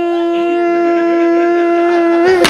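A single long organ note held at one steady pitch, rich in overtones, sounding as a dramatic horror-style sting.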